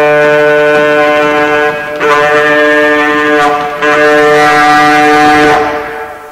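Alto saxophone holding loud, low sustained tones with a rich, buzzy spread of overtones, three long notes with short breaks between them, the last one fading away near the end.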